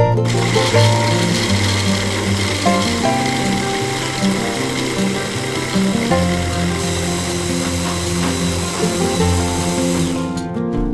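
Electric hand blender's chopper attachment running, its motor whirring steadily as it chops apple, kiwi and almonds into a coarse mash. The motor starts and stops abruptly, over plucked guitar music.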